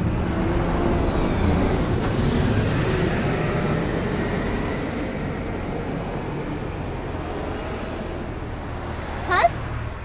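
City street traffic: a motor vehicle passes close by, loudest in the first few seconds with a falling whine, then a steadier rumble of traffic. A brief voice sounds near the end.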